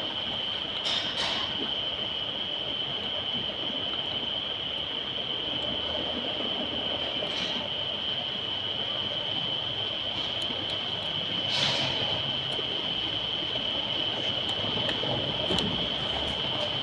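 Steady background noise: a high-pitched whine held on one note over a low, even hiss, with a few faint soft knocks.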